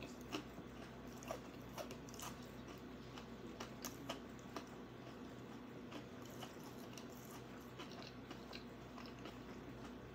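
Faint close-up chewing of a mouthful of deep-fried liver, with soft, irregular small clicks and crunches a few times a second.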